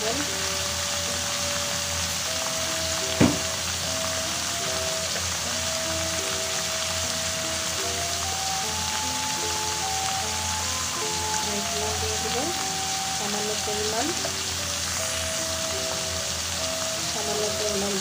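Mixed vegetables frying in oil in an aluminium karahi, a steady sizzle, with soft background music of held notes over it. A single sharp click about three seconds in.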